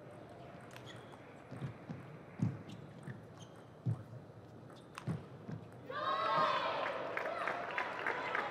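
Table tennis rally: the ball clicks off paddles and the table about once a second. About six seconds in, the knocks give way to voices shouting and cheering, louder than the rally.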